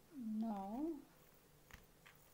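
A short closed-mouth hum from a person, under a second long, in two parts: low and level, then rising and falling in pitch.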